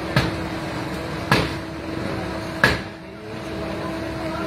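Three sharp bangs about a second and a quarter apart, over a steady low hum.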